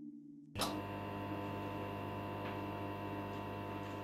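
After near silence, a steady hum of many held tones starts about half a second in and runs on unchanged: an ambient drone.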